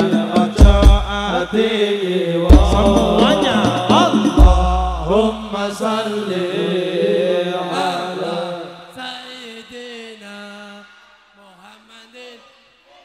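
Sholawat devotional music: male voices chanting a melody, with deep drum booms under them in the first half. The music fades out over the last few seconds.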